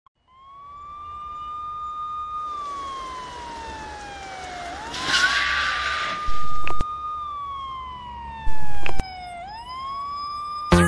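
A siren wailing: a high tone held, then sliding slowly down and sweeping quickly back up, twice over. A rushing hiss swells through the middle, and two loud low booms hit in the second half.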